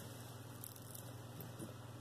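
Faint handling of a gold-tone beaded necklace, its beads softly clicking and shifting as it is laid out on a cloth mat, over a steady low hum.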